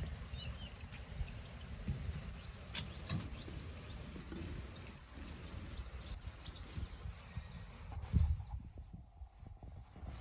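Footsteps on a wet metal footbridge with steel mesh grating: irregular low thuds and knocks with a few sharper clicks, the heaviest thud about eight seconds in. A bird chirps faintly near the start.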